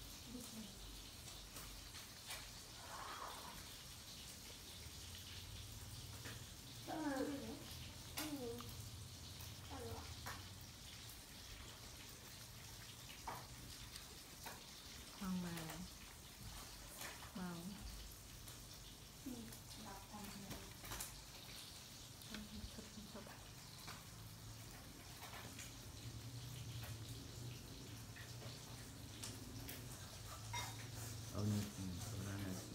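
A faint steady hiss with a few short, soft vocal sounds scattered through, each falling in pitch; the loudest come about seven seconds in and again around fifteen seconds in.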